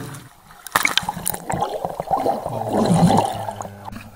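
Lake water sloshing and gurgling around a waterproof camera at the water line as swimmers stroke through it. There is a sharp splash just under a second in, and the churning is loudest about three seconds in.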